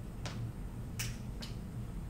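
Three faint, short clicks over a low steady room hum; the loudest click comes about a second in.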